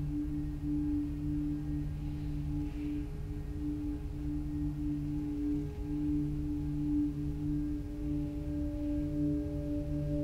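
Ambient drone music: several low held tones sounding together over a deep rumble, wavering slightly in level like a singing bowl's ring. A higher tone joins about eight seconds in.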